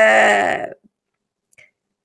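A woman's voice drawing out one syllable for under a second as she hesitates mid-sentence, then near silence for the rest of the time.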